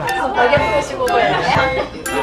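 Indistinct chatter of several voices in a busy eating place, with no one voice standing out.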